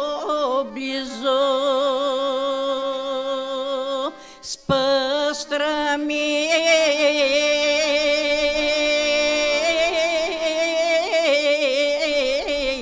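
Bulgarian authentic folk choir of women's voices singing together in long held notes with a wavering vibrato. The voices break off briefly about four seconds in and come back in.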